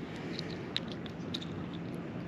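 A few faint, short clicks and soft wet handling noises as a hook is worked out of a small sand perch held in the hands, over a steady low hiss.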